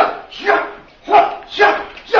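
Sharp, loud kung fu fighting shouts, about two a second, voiced with each move of a choreographed fight exchange.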